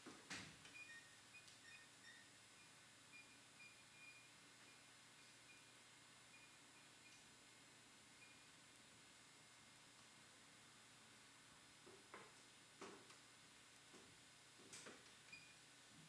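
Sparse, quiet live electronic sounds: a scatter of short high beeps in the first half and a few sharp clicks near the end, over a soft hiss.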